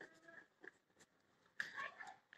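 Near silence: room tone, with a faint short pitched call just after the start and a faint rustle near the end.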